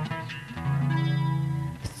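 Acoustic guitar accompaniment between sung lines: a few plucked notes, then a chord ringing for about a second. The singer comes back in right at the end.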